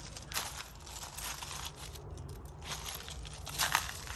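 Footsteps on loose river-rock gravel: an irregular series of soft crunches.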